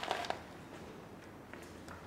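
Quiet room tone with a few faint short taps and shuffles, the loudest right at the start and a couple more near the end.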